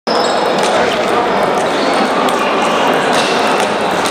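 Table tennis balls clicking on tables and paddles in quick, overlapping rallies from many tables at once, over a steady background of many voices.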